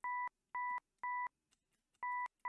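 Serum software synth playing three short repeated notes of a sine-wave patch with one added harmonic an octave above, two pure steady tones that start and stop with a click. The upper harmonic sits too far from the fundamental compared with the reference pad being recreated.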